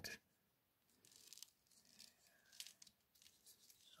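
Near silence, with a few faint clicks and rustles from a plastic tarp clip being handled and screwed shut onto an elastic band.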